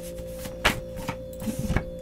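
A deck of reading cards shuffled by hand: stiff card edges click and slap against each other, with a sharp snap about two-thirds of a second in and a quick run of clicks near the end. A steady hum runs underneath.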